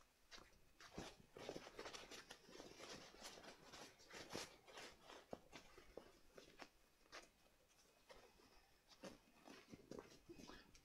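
Faint rustling and crinkling of a silky grosgrain fabric lining being pulled out of a leather clutch bag by hand, a scatter of soft rustles and small clicks.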